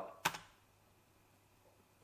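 A quick double click of computer keyboard keys about a quarter second in, then near silence.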